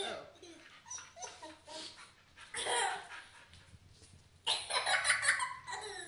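A young boy laughing hysterically in several bursts, the longest and loudest starting about four and a half seconds in.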